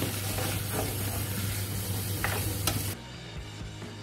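Onions, chilli, ginger and garlic sizzling in a stainless steel pot with a little water, a spatula stirring and scraping the bottom a few times. The sizzle cuts off abruptly about three seconds in.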